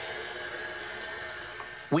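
Electric stand mixer running steadily, its beater turning through thick quick-bread batter.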